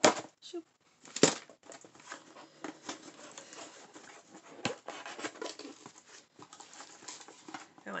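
Packaging being cut or torn open with a few sharp snips or rips in the first second and a half, then a steady crinkling and rustling of wrapping as a boxed item is unwrapped, with one more sharp snap about halfway.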